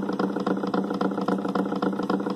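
Homemade magnet motor running: a small electric motor beside a magnet-lined washing-machine pulley and a Zhiguli flywheel spinning on top of it. It makes a steady hum with fast, even ticking.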